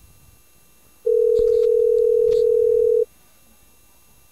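Telephone ringback tone of an outgoing call ringing at the far end: one steady two-second ring about a second in, the line not yet answered.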